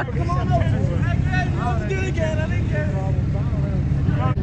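A pickup truck engine running with a steady low rumble, with people talking over it.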